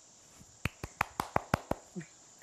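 A person clapping their hands quickly, about seven light claps in a short run.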